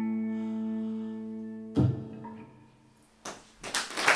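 The final held note of a slow song: a man's sung note over a ringing acoustic guitar chord, slowly fading. About two seconds in a thump cuts it off, and after a brief hush applause begins near the end.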